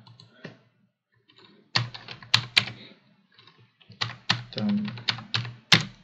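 Typing on a computer keyboard: two short runs of quick keystrokes, the second starting about four seconds in.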